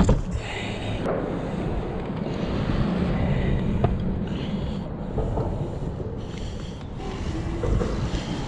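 Wind rumbling on the microphone and water moving around a boat's hull, with a few faint knocks as a rope mooring line is worked around a stainless bow cleat.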